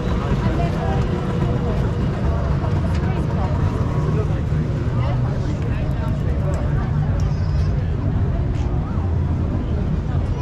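Many voices chattering over the steady running of motor scooter engines.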